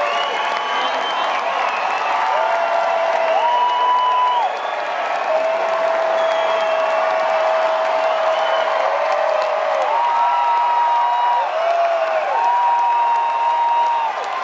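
Concert audience applauding and cheering in a large theatre. Several long held notes, gliding up at their starts and down at their ends and stepping between pitches, carry over the crowd noise.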